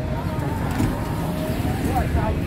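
Steady rumble of passing car traffic on a city street, with faint voices of people walking nearby.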